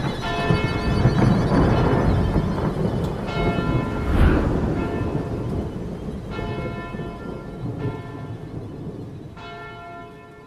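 A church bell tolling slowly, about five strikes a few seconds apart, each ringing on, over rumbling thunder. There is a loud thunderclap about four seconds in, and the whole fades toward the end.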